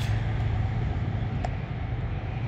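Steady low engine hum under outdoor background noise, with a faint tick about one and a half seconds in.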